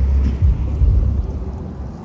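Wind buffeting the microphone outdoors: an uneven low rumble that is strongest in the first second and eases off.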